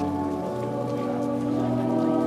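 A crowd singing a hymn together in long, held notes, the pitch shifting about half a second in, over a steady hiss of crowd noise.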